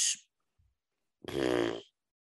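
A man's voice: a word trails off at the start, then after about a second's pause a single short, drawn-out wordless vocal noise, like a hesitation sound mid-rant.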